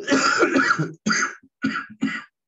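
A man's coughing fit: one long cough lasting about a second, then three shorter coughs in quick succession.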